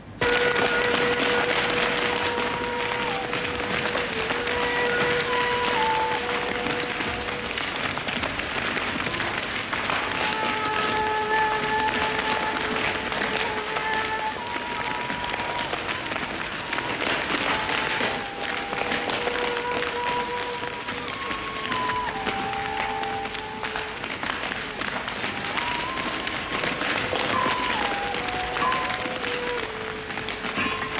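Film soundtrack: a steady wash of dense noise, starting abruptly, with long held tones above it that step up and down in pitch.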